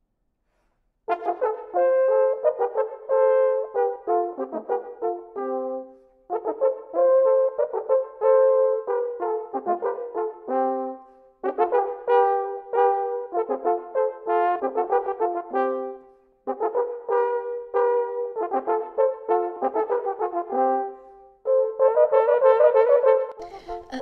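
Two Baroque natural horns by Hofmaster, valveless and from the 1740s, playing a duet in parallel lines. The music comes in phrases of quick notes with short breaths between them, beginning about a second in.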